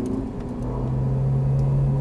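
Ferrari 458 Italia's V8 engine heard from inside the cabin while driving on track. Its note rises briefly, then about half a second in drops to a lower, steady note that grows slightly louder, over a continuous rumble.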